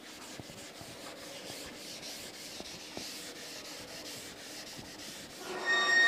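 Blackboard duster rubbing chalk off a chalkboard: a quiet, even scrubbing hiss. A short high squeal comes in near the end.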